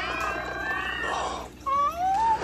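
A crowd of cats meowing together in many overlapping calls. About a second and a half in, the chorus breaks off, and a single rising call follows near the end.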